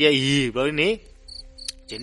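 A man's narrating voice, then about halfway in a quieter stretch of faint, high-pitched insect-like chirping over a steady low hum, with a single click near the end.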